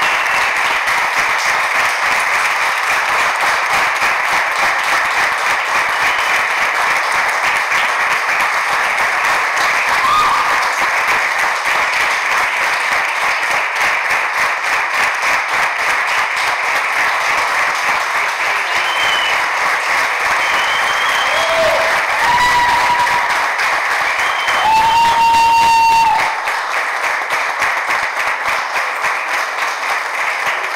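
Audience applauding steadily in a hall, with a few high held notes sounding over the clapping. The longest of these lasts about a second and a half, near the end, after which the applause thins.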